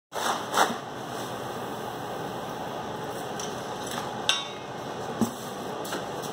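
Two cat litter scoops, one green plastic and one black, raking and sifting through granular litter in a plastic litter box. It is a steady gritty rustle, broken by a few sharp knocks of the scoops against the box: two near the start, one about four seconds in and one about five seconds in.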